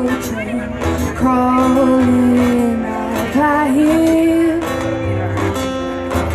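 Live acoustic guitar strummed under a woman's voice singing long, held notes that slide in pitch.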